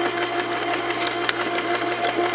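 Cuisinart Soft Serve ice cream maker running: a steady motor hum as the paddle turns in the freezer bowl, with light clicks and the splash of the liquid mixture being poured in.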